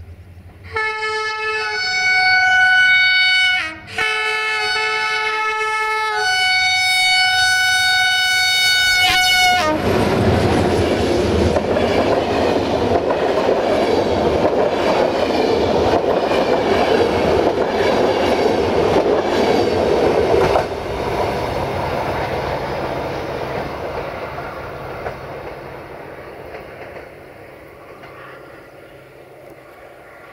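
Locomotive air horn sounding two two-tone blasts, each a low note followed by a higher one, the second blast longer. The passenger train then passes close by, its wheels clattering rhythmically over the rail joints, and the sound fades as it moves away.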